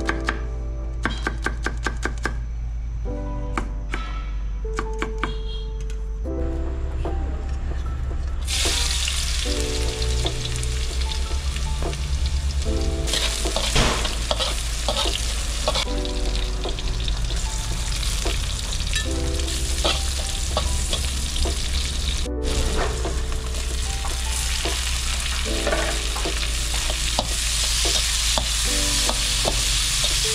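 A knife chopping green chillies on a wooden board, in quick regular cuts for the first few seconds. Then, about eight seconds in, food in hot oil in a steel wok starts to sizzle loudly and keeps sizzling while a metal spatula stirs it, with background music underneath.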